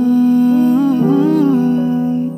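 Background music: a wordless hummed vocal melody gliding over soft sustained chords, the intro of a pop song.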